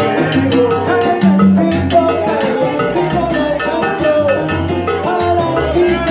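Live salsa band playing: upright bass and maracas with other percussion keeping a steady, busy beat, and a melody line over the top.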